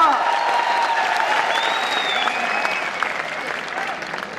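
Audience applauding, the clapping easing off toward the end.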